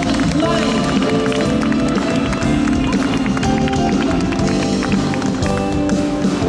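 Live pop band music played through a concert sound system, recorded from among the audience, with steady held chords and notes throughout.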